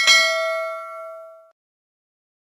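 Notification-bell sound effect: a single bright ding with several ringing tones that dies away over about a second and a half.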